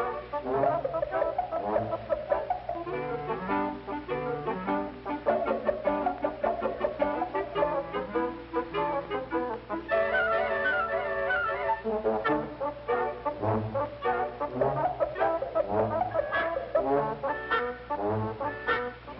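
Orchestral music led by brass, a tune of many short notes.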